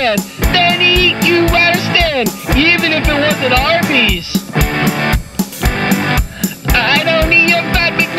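Hard rock music: a guitar playing sliding, bending notes over a drum kit, with a steady kick-drum beat about twice a second.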